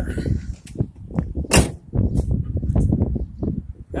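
Handling noise and wind rumble on a handheld phone microphone while walking on parking-lot asphalt, with scattered light clicks and one sharp knock about one and a half seconds in.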